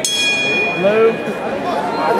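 Boxing ring bell struck once, ringing out and fading over about a second and a half, signalling the start of a round. Voices in the crowd carry on over it.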